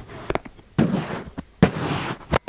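Metal fork stabbing into and dragging through a mound of kinetic sand close to the microphone, making several short, crisp, crackly crunches.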